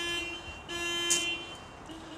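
Vehicle horn honking in three steady blasts, the middle one the longest.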